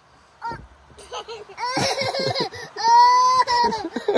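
Small children laughing and squealing, with a burst of overlapping voices in the middle and one long, high-pitched squeal late on.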